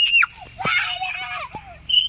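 A child's high-pitched screams in mock fright at toy spiders thrown at him: a short shriek at the start, high wordless cries in the middle, and a long steady shriek beginning near the end.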